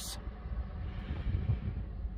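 Outdoor background noise: a low, uneven rumble with a faint hiss above it.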